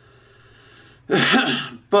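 A man's single short, breathy vocal burst, a nonverbal sound from the throat, about a second in after a moment of quiet room tone.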